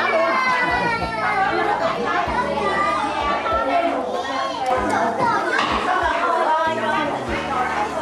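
Several young children talking and calling out over one another as they play, their high voices overlapping without a break.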